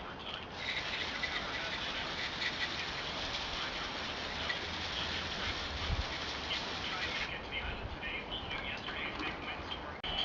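Garden hose spray nozzle spraying water onto a tire and alloy wheel: a steady hiss that starts about half a second in and cuts off about seven seconds in.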